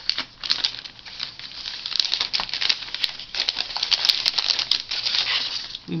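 Clear plastic bag crinkling and crackling in a run of irregular rustles as hands work a paper card out of it.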